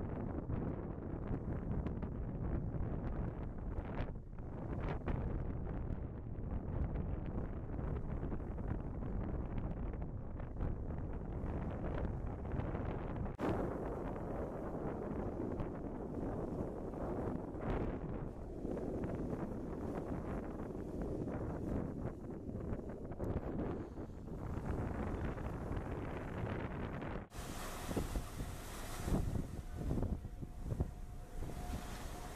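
Wind buffeting the microphone: a steady low rumbling noise that shifts in character twice, brightening near the end.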